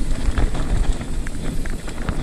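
Hardtail mountain bike riding fast down a dirt trail: a steady low rumble of wind and tyres on the ground, with frequent sharp rattling clicks and knocks from the bike over bumps.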